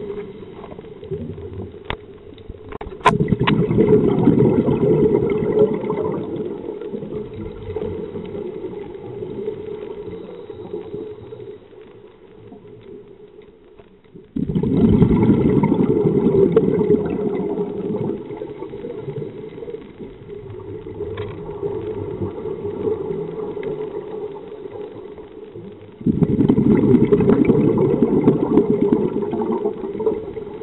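A scuba diver's exhaled bubbles rushing from the regulator underwater, three breaths about eleven seconds apart, each starting suddenly and fading over several seconds. A few sharp clicks come just before the first breath.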